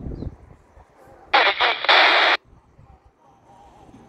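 Quansheng UV-K5(8) handheld radio's speaker, tuned to the railway band, giving a loud burst of static hiss about a second long, in two parts, that starts and cuts off abruptly.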